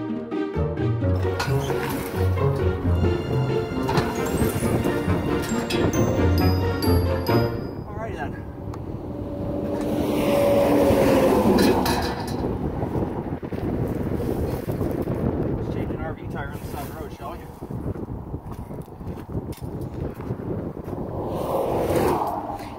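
Brass-led background music for about the first seven seconds, then open-road noise from a highway shoulder. A vehicle passes loudly about ten to twelve seconds in, its tone dropping slightly as it goes by, with a few scattered clanks afterwards.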